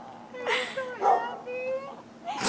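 A woman crying in high whimpering sobs, with sharp gasping breaths about half a second and a second in, then a drawn-out wavering whimper.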